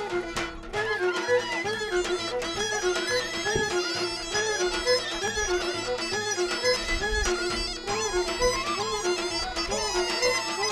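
Bulgarian folk dance tune played on a bagpipe (gaida): a steady drone under a repeating, ornamented melody.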